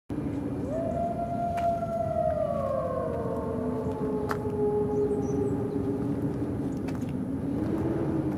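Eerie ambient soundtrack intro: one long sustained tone that glides slowly downward over a steady low drone and a hiss, with a couple of faint clicks.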